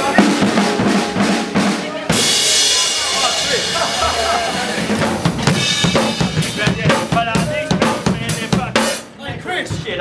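Drum kits being played in grooves of bass drum, snare and cymbals: first a small vintage kit, then a sudden switch about two seconds in to a full Premier kit, opening with a cymbal wash.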